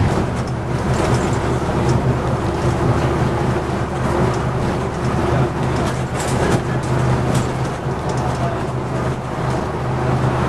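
Vintage bus engine running at a steady pitch, with scattered rattles and clicks.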